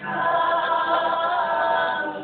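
A group of voices singing a waiata, holding a long sustained chord.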